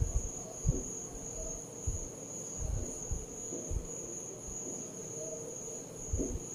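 Chalk softly tapping and scraping on a chalkboard as small coiled shapes are drawn, a few light knocks spread through the first four seconds. A steady high-pitched whine runs underneath throughout.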